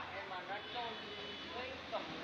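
Faint voices of people talking at a distance.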